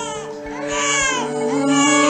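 Held keyboard chords, changing chord about a second in, with a baby crying over them in short high wails that rise and fall.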